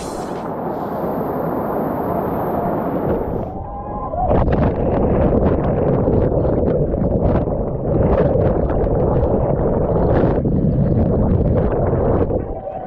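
Rushing, churning water in a concrete jungle waterslide channel, heard up close from a camera riding down it. About four seconds in it gets louder, with a splashing crackle, as the camera plunges into the foaming water.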